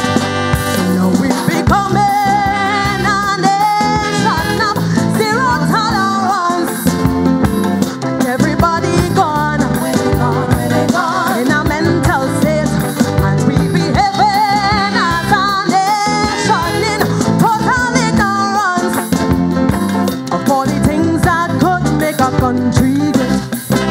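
Live calypso band playing an upbeat groove with keyboards and drum kit, a woman singing the lead over it.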